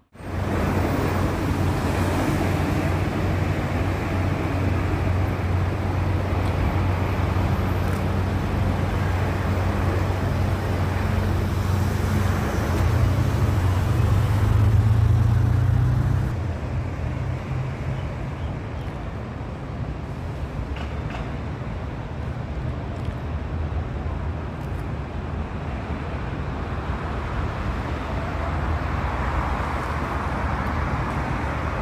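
Road traffic: a steady wash of passing cars, with a heavy vehicle's low engine hum that grows louder until about sixteen seconds in, then falls away, leaving the lighter, steady traffic noise.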